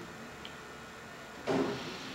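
Quiet room tone in a hall, with a faint click about half a second in, then near the end one quieter voice answering "Amen" in reply to the preacher's call.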